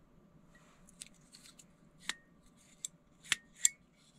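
Sharp metal clicks and clacks of a folding multitool hatchet's steel parts being moved and snapped into place, five or so clicks, the two loudest close together near the end, with faint handling rustle.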